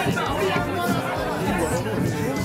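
Several people talking over one another in a crowded room, with music playing underneath.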